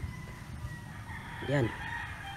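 A rooster crowing faintly: one long, drawn-out call that tails off slightly in pitch, with a short spoken word over it about a second and a half in.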